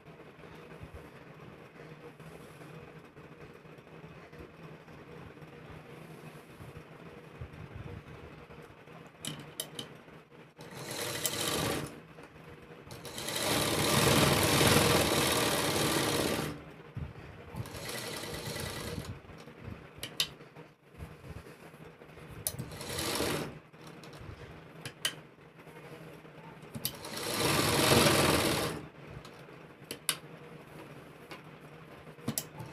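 Sewing machine stitching through fabric in about five separate bursts of a few seconds each, with short stops between while the cloth is turned and guided; the longest and loudest runs are in the middle and near the end. The first third is quieter, with a few light clicks before the stitching starts.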